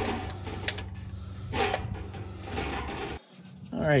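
Ratchet wrench clicking in short bursts, with a few sharp metal clicks, as a 14 mm oil drain plug is worked loose, over a steady low hum. The sound cuts off suddenly near the end.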